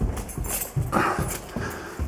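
Footsteps thudding dully up carpeted stairs, a few soft thumps, with breath sounds close to the microphone.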